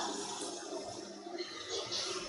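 Quiet room noise with a faint steady hum and light hiss; no distinct event.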